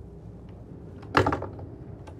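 A wooden cabin door on a motor yacht being pushed open, with one sharp knock from the door or its latch just over a second in. Under it runs the steady low hum of the boat underway.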